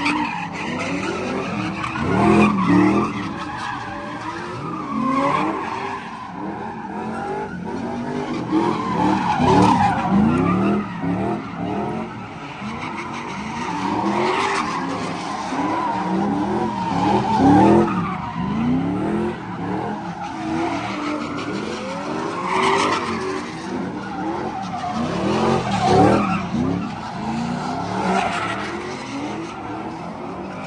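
Cars spinning donuts on asphalt, engines revving up and down over and over with tyres skidding and squealing. The noise surges louder every few seconds as each car comes around.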